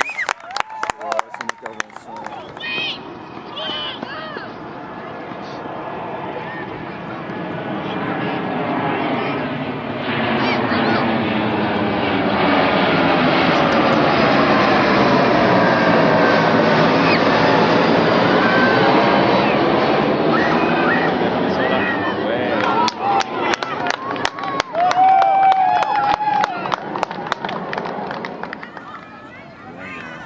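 An aircraft passing overhead: a rushing roar that swells over several seconds, stays loud through the middle and then fades away, with a sweeping, phasing quality as it passes.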